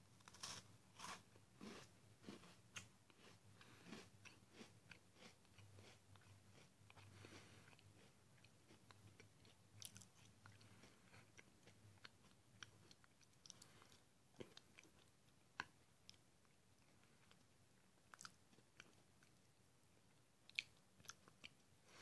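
Faint crunching of a thin, crispy Brownie Brittle blondie being bitten and chewed. The crunches come in scattered short clicks, closer together in the first few seconds and sparser after.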